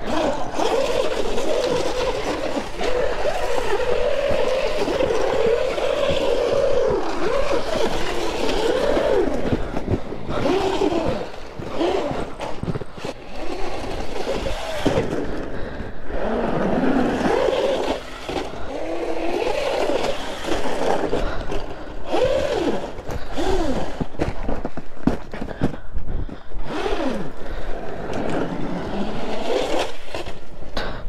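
Traxxas Slash 4x4 electric RC truck driving through snow, its motor whine rising and falling over and over with the throttle.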